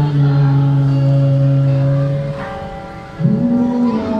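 Slow hymn played on an electronic keyboard in long held, organ-like notes. The chord falls away a little past two seconds in and a new note enters near the end.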